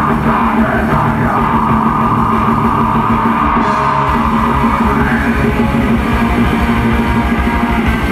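Metal band playing live: distorted guitars and bass over fast, dense drumming, with a harsh shouted vocal through the first five seconds or so.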